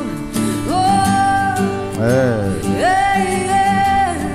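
A woman sings long, held wordless notes with a wavering run between them, over steadily picked acoustic guitar, in a live performance.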